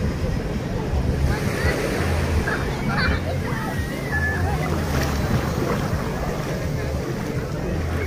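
Busy beach ambience: many people's voices talking and calling out, small waves washing onto the sand, and music with a low bass playing in the background.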